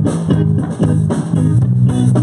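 Live rock band playing an instrumental passage: electric guitar and bass guitar over a drum kit, loud and steady, with no vocals.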